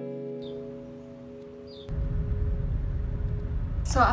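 Background guitar music with a held chord slowly dying away; about halfway through, a steady low rumble comes in underneath it.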